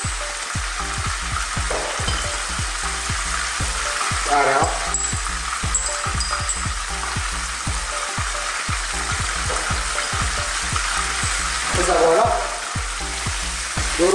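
Chicken pieces and spices frying in oil in a pot: a steady sizzle.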